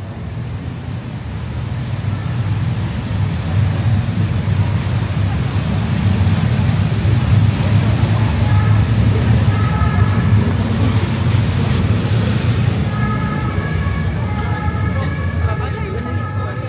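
Busy city street traffic: a low rumble and tyre hiss from vehicles on wet road, swelling and loudest through the middle. A fainter two-tone emergency siren sounds over it from about halfway, clearer near the end.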